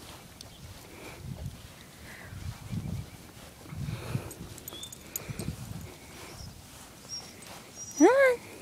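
A person and a leashed dog walking on grass: soft, irregular low thumps about once a second, with a few faint, short high chirps.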